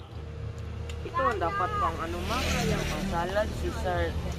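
Steady low rumble of a motor vehicle engine running, with people talking in the background from about a second in.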